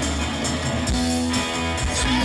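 Live rock band playing, with electric guitar prominent over bass and drums.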